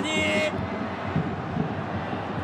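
Steady stadium crowd noise with no distinct cheers or chants standing out, with the commentator's voice trailing off in the first half second.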